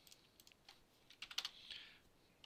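Faint computer keyboard keystrokes: a few scattered key clicks, then a quick run of several keys about a second and a half in.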